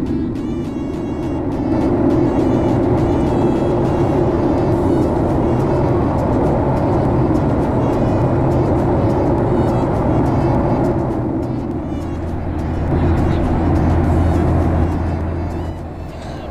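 Steady engine and airflow noise inside the cabin of a Boeing 737-800 with CFM56-7B turbofans, climbing after takeoff, with background music laid over it. A low steady hum joins about twelve seconds in.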